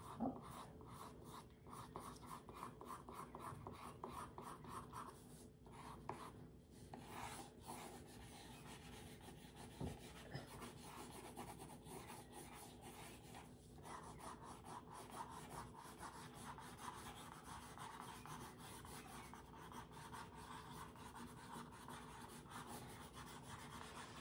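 Faint, quick, repeated strokes of a pencil rubbing on paper as hair is traced over a photo on an easel board, with short pauses between runs of strokes.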